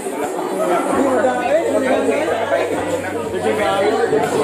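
Several people talking over one another: group chatter, no single voice standing out. A low steady hum comes in about a second in.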